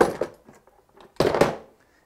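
A record flight case being opened: a sharp knock as the lid comes away. A second, louder knock and scrape follows about a second later.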